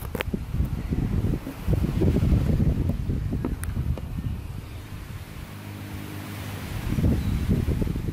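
Wind buffeting a phone's microphone on a beach, an uneven low rumble that eases off about five seconds in and picks up again near the end.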